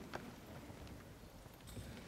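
Faint footsteps on a hard floor: a few soft, short knocks as people walk to and from a podium.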